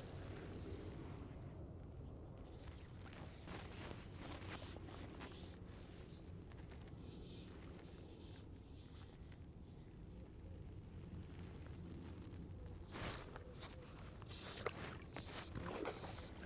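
Faint outdoor ambience of wading and fly casting in a river: soft scattered rustles and scrapes from the angler's movements and handling of rod and line, a little busier near the end.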